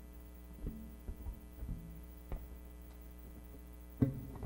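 A steady electrical mains hum under a quiet electric bass passage: about five soft, sparse plucked bass notes in the first half, then only the hum.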